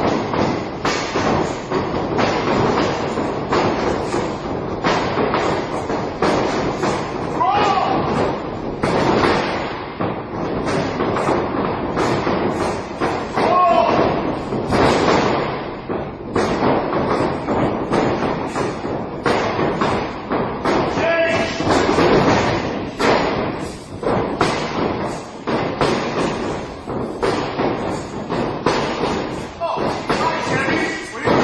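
Repeated heavy thuds and slams of bodies hitting a wrestling ring's mat and ropes, one after another, mixed with indistinct voices and shouts.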